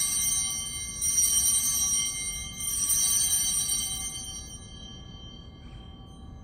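Altar bells rung at the elevation of the chalice, marking the consecration. There are two fresh rings, about a second in and about two and a half seconds in, after one just before; each rings on and dies away, and they fade out after about four and a half seconds.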